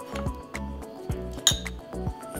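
Background music, with a metal spoon clinking against a glass bowl: one sharp, ringing clink about a second and a half in.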